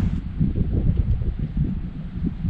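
Wind buffeting the camera microphone: an irregular low rumble in uneven gusts.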